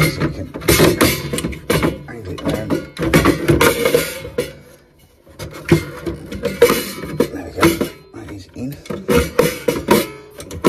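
Irregular sharp metal knocks, clatter and scraping as a gas boiler's burner is worked back into place on the heat exchanger, with a short lull about five seconds in.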